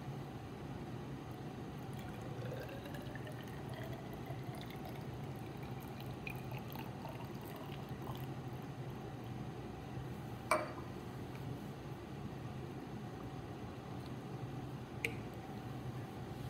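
Water poured from a beaker into a graduated cylinder, its pitch rising as the cylinder fills, followed by small trickles. There is a sharp knock about ten seconds in and a lighter click near the end.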